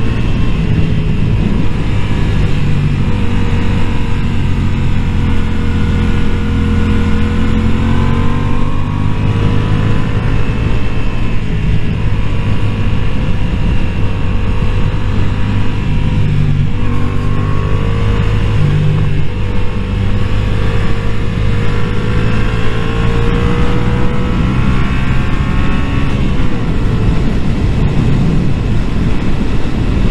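Yamaha motorcycle engine running at road speed under the rider, with wind rush on the helmet-mounted microphone; the engine note rises and falls gently as the throttle is opened and eased.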